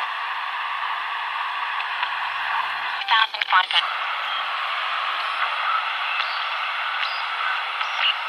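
Spirit box radio static through a small speaker: a steady hiss, broken about three seconds in by a brief run of clipped voice-like radio fragments.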